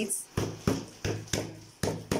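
Shoemaker's hammer tapping a folded toe tip flat onto the edge of a sandal insole: about five sharp taps, roughly three a second.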